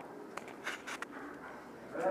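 Faint rustling with a few light clicks as swing doors are pushed open.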